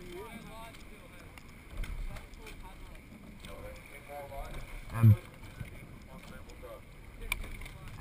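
Water trickling and lapping along the hull of a rowing shell as it glides with the crew's oars off, with wind on the microphone. A short loud call from a voice comes about five seconds in.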